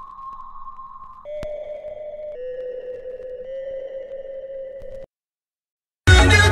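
A steady, held pitched tone that steps down in pitch twice, then cuts off abruptly about a second before the end.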